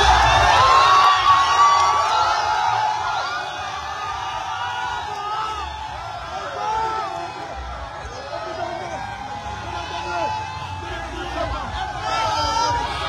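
Large crowd cheering and shouting, many voices overlapping, loudest in the first couple of seconds and then carrying on a little lower.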